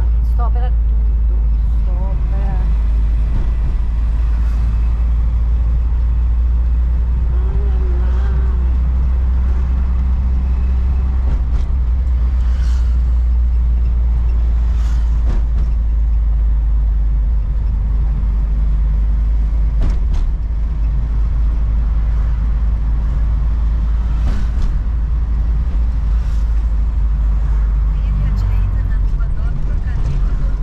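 Volkswagen Kombi van on the move, heard from inside the cab: a steady low rumble of engine and road noise.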